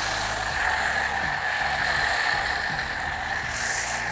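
A pressure-washer foam lance spraying snow foam onto a car: a steady high-pressure hiss with a constant whistling tone in it.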